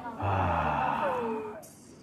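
A long, breathy sigh that falls in pitch and trails off.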